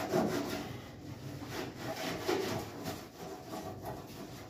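Hand-scrubbing of a stainless-steel gas stovetop: repeated back-and-forth rubbing and scraping strokes on the metal top around a burner.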